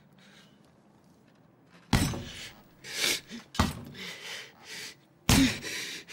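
Three heavy bangs against a door in a small room, starting about two seconds in and coming roughly a second and a half apart, with softer noises between the blows.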